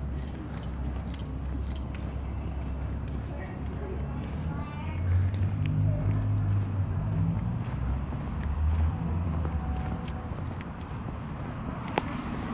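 Low, steady rumble of a vehicle engine running that grows louder about five seconds in, with scattered footsteps on pavement.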